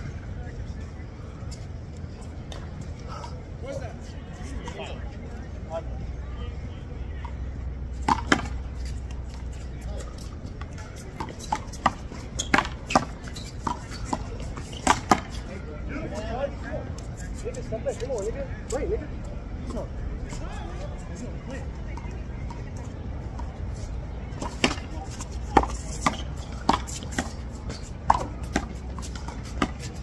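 A small rubber handball smacked by hand against a concrete wall and bouncing off the court: sharp slaps in two rallies, one starting about eight seconds in and another from about twenty-four seconds. A low steady rumble runs underneath.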